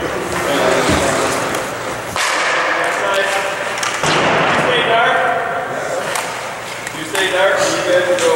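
Men talking, with a sudden scraping swish of hockey skate blades on ice about two seconds in and again about four seconds in.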